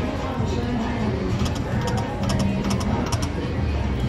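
Video slot machine spinning its reels, its electronic spin sounds mixed into casino background din of chatter and machine music, with a run of short ticks about halfway through as the reels settle.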